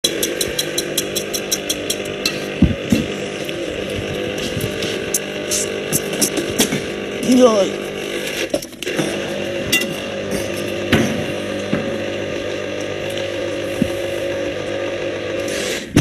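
Kitchen clatter over a steady background hum: rapid clicking for the first two seconds, then scattered knocks and clinks of dishes and utensils, with a brief voice in the middle.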